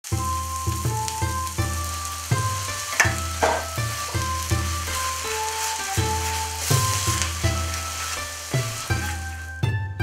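Spätzle, diced bacon and eggs sizzling in a hot wok while a wooden spatula stirs them. The sizzle stops suddenly just before the end. Background music with plucked notes plays throughout.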